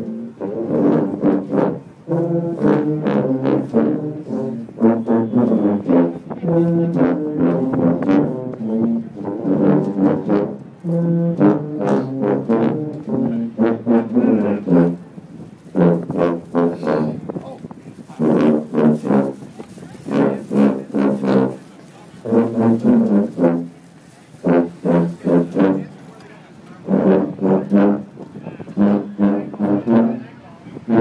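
A section of sousaphones playing a tune together in short, detached notes, phrase after phrase with brief breaks between.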